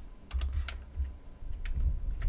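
Computer keyboard being typed on: a few irregular keystrokes, each a sharp click, several with a low thud.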